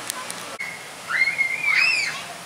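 A high-pitched squeal that wavers up and down, starting about a second in and lasting about a second, the loudest sound here. A short steady high tone comes just before it.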